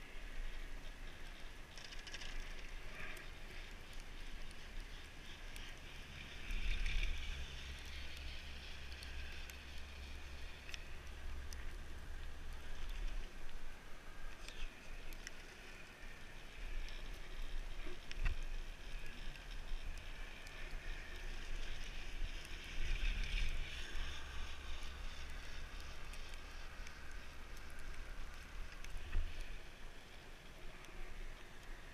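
Wind rumbling steadily on the microphone during a ride up a detachable quad chairlift, with a few faint clicks. It swells louder twice, about seven seconds in and again around twenty-three seconds.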